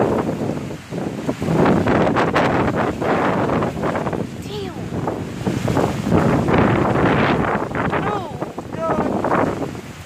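Heavy hurricane rain and gusting wind, with the wind buffeting the phone's microphone so that the noise swells and drops with each gust.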